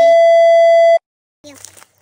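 Loud steady test-tone beep of a colour-bars "we'll be right back" card, held at one pitch for about a second and then cut off abruptly into dead silence. A boy's voice and a cough follow near the end.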